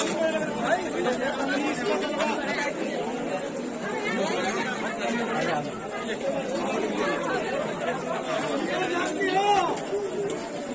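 Many people talking at once in overlapping chatter, a small crowd close around, with no single voice standing out.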